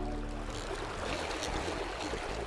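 Flowing river water: a steady rush, with a music bed fading out about half a second in.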